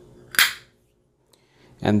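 A single sharp metal clink, about half a second in, from a stainless-steel espresso portafilter with its single-wall basket, as it is handled and set down.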